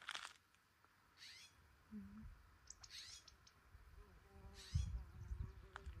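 A songbird singing faint, short, high phrases that fall in pitch, four of them about a second and a half apart. A low rumble comes in near the end.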